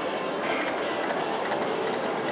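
Video slot machine spinning its reels in a free-games bonus round, a steady run of game sound with a few short ticks.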